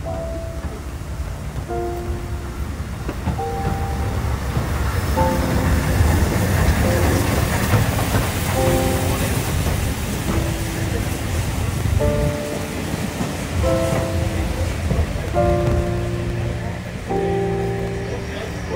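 Background music of slow held notes over a steam locomotive and its carriages running into a station. A low rumble and hiss swell to their loudest between about four and twelve seconds in, then ease off.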